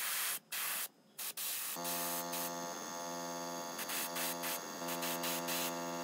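Airbrush spraying paint in short hissing bursts with brief pauses. From about two seconds in, a steady hum joins the hiss.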